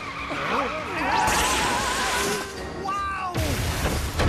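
Cartoon sound effect of a car skidding, tyres squealing, with hiss from about a second in and a sudden loud noise burst near the end. Wavering voices crying out and background music play underneath.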